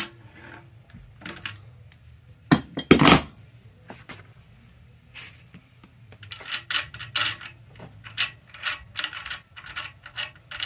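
Metal clinks and knocks of an adjustable wrench and hardware being worked on the axle nut of an e-bike rear hub motor while a torque plate is fitted. There is a loud cluster of knocks about two and a half seconds in, then a run of quicker clicks and rattles in the second half.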